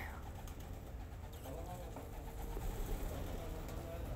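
Domestic pigeons cooing, a few low calls over a steady low rumble.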